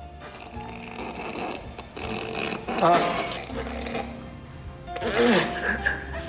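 People stifling laughter behind their hands over steady background music, with louder bursts of it near the middle and again near the end.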